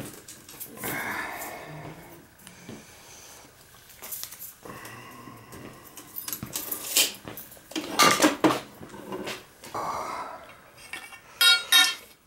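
Hand tools clinking and clattering against each other and a metal toolbox as they are rummaged through, with a few sharper metallic knocks and a brief ringing clink near the end.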